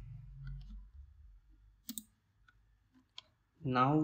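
Two short, sharp computer mouse clicks, a little over a second apart, against faint low room hum.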